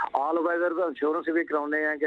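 Speech only: a man talking over a telephone line, the voice thin and cut off in the highs.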